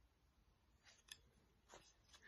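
Near silence, broken by a few faint, short ticks about a second in and again near the end.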